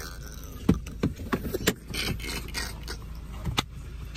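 Scattered knocks, bumps and rustling as people shift about inside a car, over a steady low hum.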